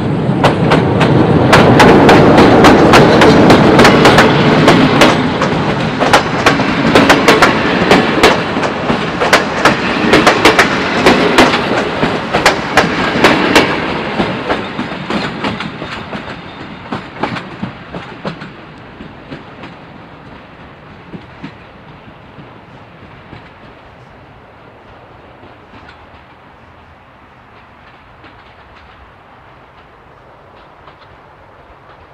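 CFR class 60 diesel-electric locomotive, with its Sulzer 12-cylinder engine, pulling a passenger train away under power: the engine is loud as it passes close. Then the coaches' wheels click over rail joints, and the sound fades away over the last third as the train recedes.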